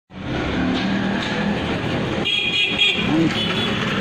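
Street sound in a lane with a horn tooting twice from a little after two seconds in, the first toot about half a second long, the second short, over background voices.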